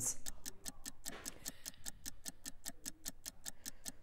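Countdown clock sound effect ticking fast and evenly, about six ticks a second.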